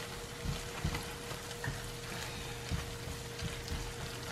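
Chorizo and onion sizzling steadily in a frying pan, stirred with a wooden spatula that gives a few soft scrapes and knocks against the pan.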